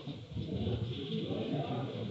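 Indistinct background chatter: people talking away from the microphone, no single voice clear.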